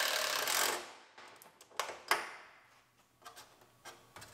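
Cordless impact wrench running a bolt up through an aluminum muffler heat shield, stopping about a second in. A few light clicks and taps follow.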